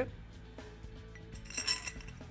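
Steel bolt and washer clinking against a metal mounting bracket as the bolt is fed through it, a quick run of light metallic clinks near the end.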